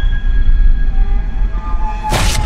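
Horror film trailer sound design: a deep low rumble that hits suddenly just before and holds, with thin, steady high tones drawn out above it.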